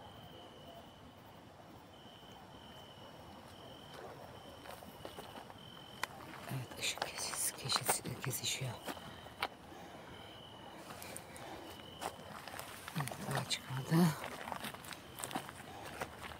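Footsteps crunching on a gravel track, in irregular bursts from about six seconds in and again near the end. Throughout the first twelve seconds an insect chirps in a steady high pulsed tone.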